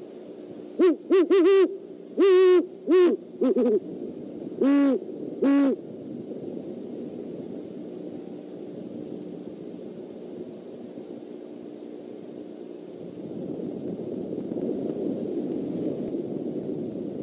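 Great horned owls hooting: a run of about nine deep hoots in the first six seconds, then only a steady low background hiss.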